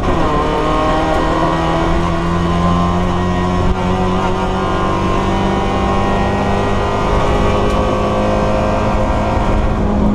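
Fiat Palio race car's four-cylinder engine under hard acceleration, heard from inside the cabin. The revs drop sharply at an upshift right at the start, then climb steadily through the gear. A brief break about four seconds in is followed by a steady pull with slowly rising revs.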